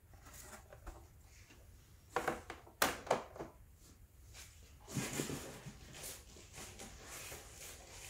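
Hard plastic CGC comic slabs clacking as they are set down and shifted on a table: a few sharp clacks about two to three seconds in, then softer scraping and handling noise.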